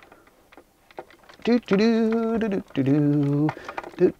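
A man's voice holding two long wordless notes, like a hum, the second lower in pitch. Before them come faint small clicks as a coaxial cable connector is handled.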